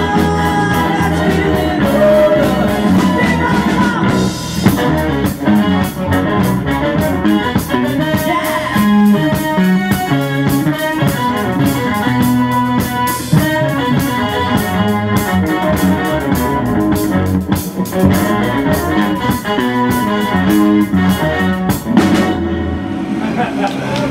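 Live rock band playing amplified on stage: electric guitar, keyboards and drum kit together.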